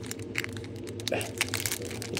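Foil wrapper of a Pokémon trading-card booster pack crinkling and crackling in quick, irregular clicks as the pack is handled and opened.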